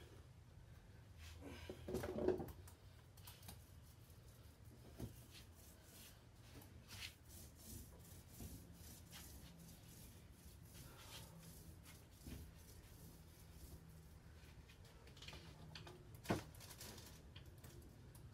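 Light handling sounds of glued wooden strips being turned and set into a bending jig: scattered faint clicks and knocks, with a louder clatter about two seconds in and a sharp click near the end.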